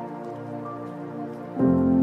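Soft background music with sustained notes, a louder chord entering near the end, over the fine crackling sizzle of chicken pieces deep-frying in hot oil.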